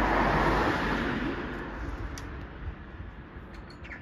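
A passing car on the road, its tyre and engine noise loudest at the start and fading away over about three seconds.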